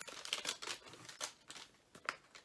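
Crinkly packaging handled and turned over by hand, a quick run of small crackles and rustles over the first second or so, then quieter.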